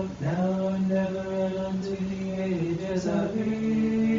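Monks chanting an Orthodox Vespers hymn in men's voices, with long held notes that step from pitch to pitch. A second voice line joins about three seconds in.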